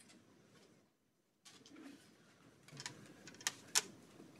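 Quiet room, then a few sharp clicks and knocks in the last second and a half: handling noise at a podium microphone.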